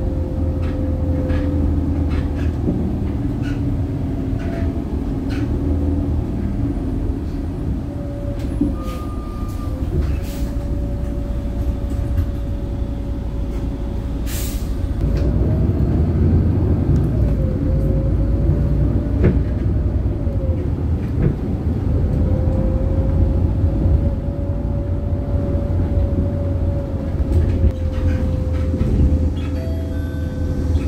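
Inside a moving city bus: steady low engine and road rumble with a drivetrain whine that rises and falls in pitch as the bus slows and pulls away, louder from about halfway through, with scattered rattles and clicks from the cabin.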